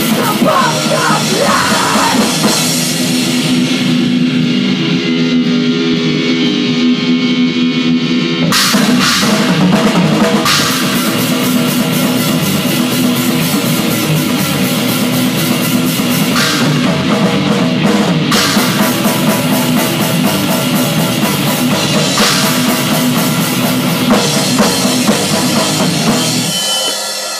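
Thrash metal band playing live in a rehearsal room: distorted electric guitars, bass guitar and drum kit, with a shouted vocal line at the very start. The cymbals fall away for a few seconds after the vocal, then crash back in with the full kit for the rest of the passage.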